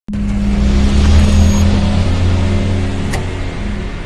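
Sound effect for an animated channel logo intro: a loud low rumble with a steady hum, starting abruptly, and a sharp hit about three seconds in.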